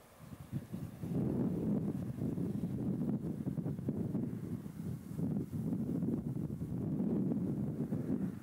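Wind buffeting the microphone: a gusting low rumble that gets louder about a second in.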